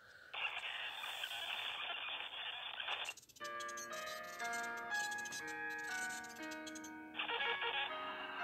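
TV static hiss for about three seconds, then a slow, eerie tune of long held notes, with the static hiss coming back over the tune near the end.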